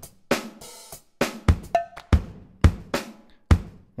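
Sampled acoustic drum kit, an Abbey Road 70s vintage kit, played by hand on Maschine drum pads: about eight unevenly spaced hits of kick, snare and hi-hat, with a cymbal ringing briefly near the start.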